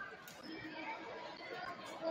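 Faint, scattered chatter of several voices in a large gymnasium.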